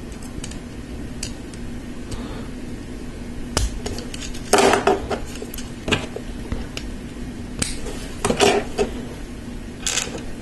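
Small LEGO plastic parts clicking and clattering against each other and the tabletop as tires are handled and pushed onto wheel rims, with louder bursts of clatter about halfway through and again near the end.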